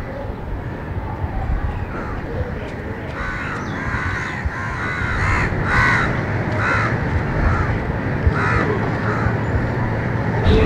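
A bird calling in a run of short, repeated calls, about two a second, starting about three seconds in, over a steady low rumble.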